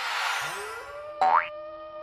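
Cartoon sound effects in an animated intro: a whooshing swell that fades, then a quick rising 'boing' a little over a second in, the loudest sound, over held musical notes.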